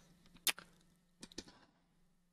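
Faint computer mouse and keyboard clicks: one sharp click about half a second in, then a quick run of key taps around a second and a half in, over a faint low hum.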